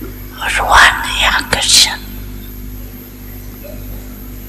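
A woman speaking a short phrase in Hindi into a microphone, from about half a second to two seconds in, over a steady low electrical hum.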